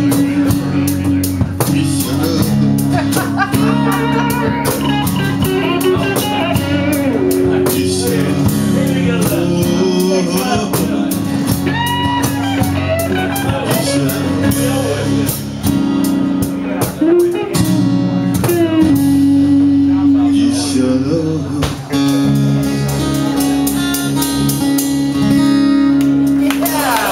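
Live band playing an instrumental break: strummed acoustic guitar under electric guitar lead lines, with several notes bent in pitch.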